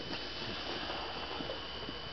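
Low, steady background noise with a faint constant high tone and a few small, faint clicks; no distinct event.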